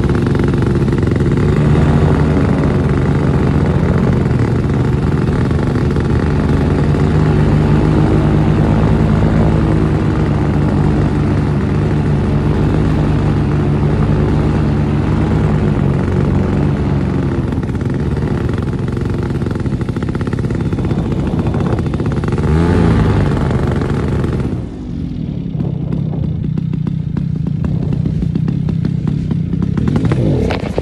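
Paramotor engine running steadily, with a rush of air. About 23 seconds in its pitch swings, and just before 25 seconds it is throttled back to a lower, quieter hum as the pilot descends toward the field.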